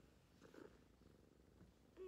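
A black cat purring faintly while held close to the microphone, a low steady pulsing rumble.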